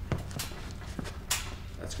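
A few short scuffs and clicks from a lifter moving under a loaded barbell in a squat rack, over a low steady hum; a man's voice begins right at the end.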